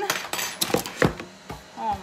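Plastic mixing bowl knocking and scraping on a wooden cutting board as dough is tipped out of it: a quick run of clicks and knocks through the first second, the loudest about a second in.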